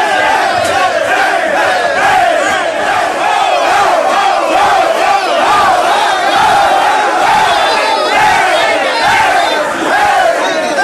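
A football team of men yelling together in celebration after a win: many loud voices shouting at once without a break.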